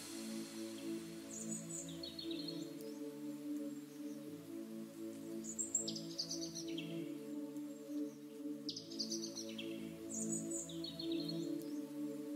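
Calm ambient background music of layered, held notes, with short bird chirps heard four or five times over it.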